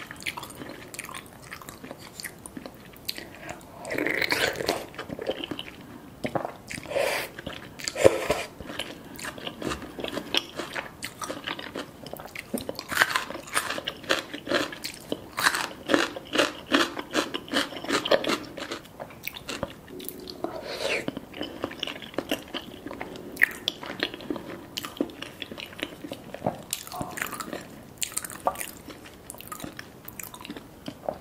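Close-miked chewing and eating of spicy seafood noodle soft tofu stew, with many short wet mouth clicks and smacks. There are denser, louder stretches of eating a few times.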